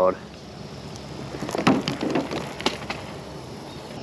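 Light clicks and scrapes of a spinning reel being handled and fitted into a fishing rod's reel seat, mostly between about one and a half and three seconds in, over a steady outdoor hiss.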